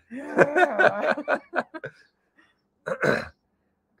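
People laughing for about two seconds, then after a short pause a single brief cough-like burst about three seconds in.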